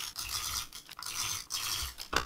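Adhesive tape runner drawn along the edges of a paper frame, making several short scratchy strokes.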